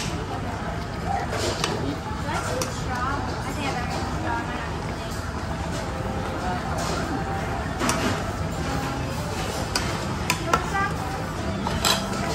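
Restaurant background chatter over a steady hum, with a few short sharp clinks as a metal ladle works through a steel hot pot of broth.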